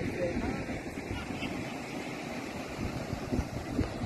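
Wind buffeting a phone microphone over the steady wash of surf breaking on a sandy beach.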